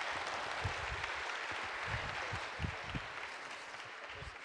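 Audience applauding: a steady patter of many hands clapping that slowly dies down near the end.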